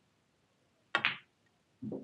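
A single sharp clack about a second in: a pool cue striking the cue ball, which knocks into the red just in front of it, on an English 8-ball pool table.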